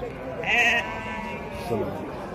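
A single short, wavering bleat from a sheep or goat about half a second in, over the murmur of a crowded livestock market.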